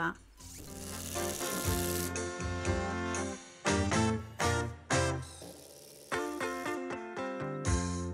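Instrumental background music, a run of sustained notes with sharp attacks.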